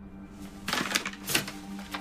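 Paper bag and clothes rustling and crinkling as they are handled, with a few sharp crinkles in the middle.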